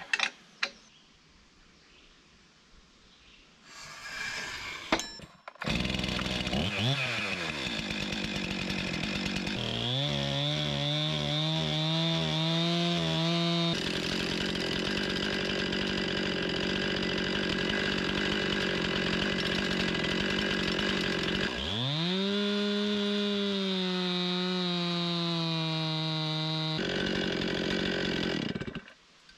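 Stihl 261 chainsaw in an Alaskan chainsaw mill started about five seconds in and revved up. It then runs at full throttle ripping along a log, dips in pitch briefly and recovers partway through, and eases off near the end. The owner judges the chain too dull for the cut.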